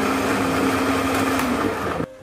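Miyako SM-625 stand mixer's motor running on speed 1, its beaters spinning while the bowl turns by itself; a steady whir that cuts off suddenly near the end.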